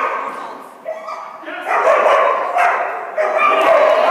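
A dog barking and yipping repeatedly as it runs, echoing in a large indoor arena, with a person's voice mixed in. The calls are loudest in the second half.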